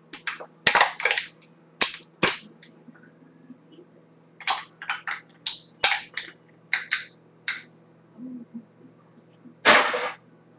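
An empty aluminium drink can crushed by hand, crumpling in a rapid run of sharp metallic crackles and pops. There are two spells of squeezing, then one loud crack near the end.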